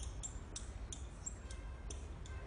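Dry-erase marker writing on a whiteboard: a string of faint, short high-pitched ticks and brief squeaks as the tip strikes and drags across the board, a few each second.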